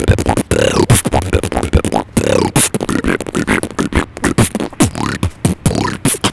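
Human beatboxing performed close into a handheld recorder: a fast, dense run of mouth-made kick, snare and hi-hat sounds, with short sliding vocal tones woven between the hits.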